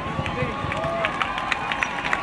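Crowd of demonstrators in the street, voices talking and calling out, with a run of short, sharp clicks or knocks starting about a second in.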